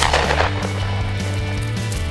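The report of a shotgun shot trails off over about the first half second, over rock music with a steady beat that runs throughout.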